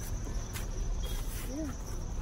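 Outdoor background: a steady low rumble with a thin, steady high-pitched whine over it. A brief hummed "mm" comes near the end.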